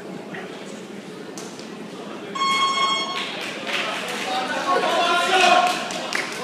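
An electronic buzzer sounds once, a steady tone lasting just under a second, about two seconds in. Voices from the crowd shout over and after it.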